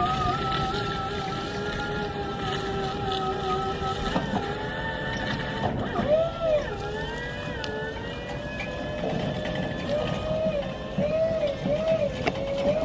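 Skyjack SJIII-3226 electric scissor lift driving, its motor whining steadily; the pitch dips and rises about six seconds in and wavers up and down near the end as the speed changes.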